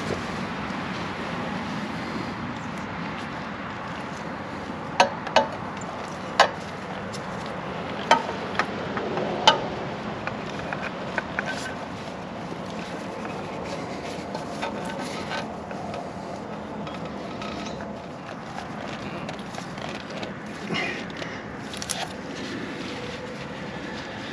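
A new spin-on oil filter being threaded and hand-tightened onto a motorcycle engine, with scattered sharp clicks and scrapes of hand and filter handling over a steady background noise.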